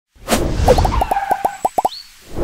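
Cartoon-style intro sound effects: a whoosh, then a quick run of about ten short, falling bloop-like pops that come faster toward the end, closed by a brief rising whistle.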